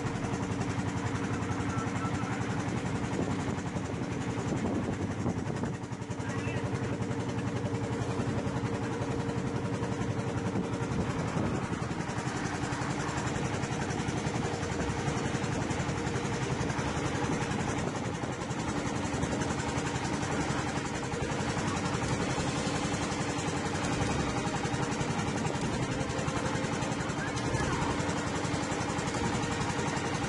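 Small fishing boat's engine running steadily, a constant even hum with no change in speed.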